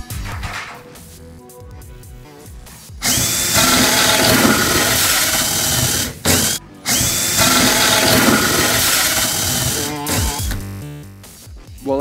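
Cordless drill spinning a hole saw through a drywall ceiling. It makes two cuts: one starting about three seconds in, and a second after a brief stop just past six seconds. Each starts with a rising whine and the second fades out near the end.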